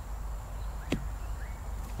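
A golf club striking through bunker sand on a bunker shot: one short, sharp impact about a second in.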